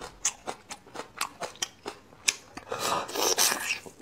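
Close-miked wet chewing and lip-smacking clicks while eating braised bone marrow. About three seconds in comes a longer slurp as marrow is sucked from the hollow end of a bone.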